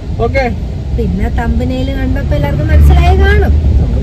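Conversation inside a moving car over the steady low rumble of road and engine noise, which swells louder for about a second near three seconds in.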